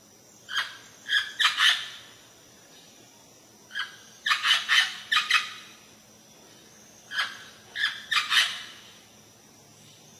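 Amazon parrot calling: three bouts of short calls in quick succession, each bout a few seconds apart.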